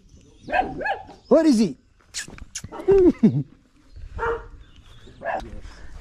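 A dog barking several times, in short separate barks with pauses between them.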